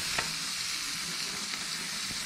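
A swordfish steak sizzling on a hot gas grill grate, a steady hiss, with one light click shortly after the start.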